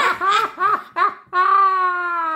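A person's voice laughing in a high, put-on character voice for a plush mouse puppet: short rhythmic "ha" syllables, about three a second, then one long held note.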